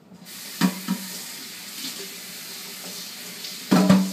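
Kitchen tap running into a sink while a blender jar is rinsed. The water comes on just after the start, with two knocks about half a second in and a louder clunk near the end.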